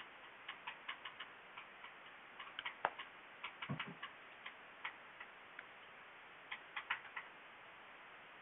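Faint, irregular light clicks and taps of small objects being handled, in scattered clusters, with one sharper click a little under three seconds in and a soft thump just after.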